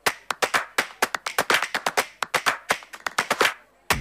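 Applause: a run of sharp, irregular hand claps that starts abruptly and breaks off shortly before the end.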